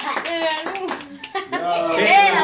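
A small group clapping their hands with voices calling out, the clapping thinning out about a second in.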